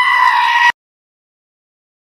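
A young man's loud, high-pitched scream that rises briefly and then holds on one pitch, cut off suddenly less than a second in.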